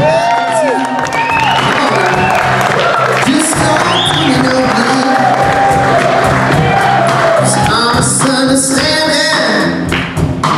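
Live blues-rock band playing an instrumental passage: an electric guitar lead with notes bent up and down over drums and bass.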